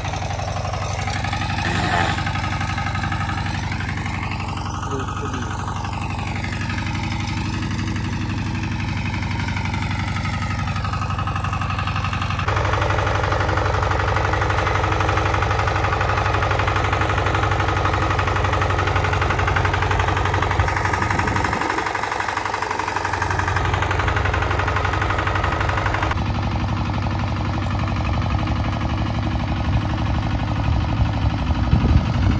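Single-cylinder diesel engine of a walking tractor (power tiller) running steadily while it ploughs a paddy field, its sound changing abruptly a few times.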